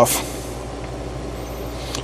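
Steady background hiss with a low hum under it, even in level throughout.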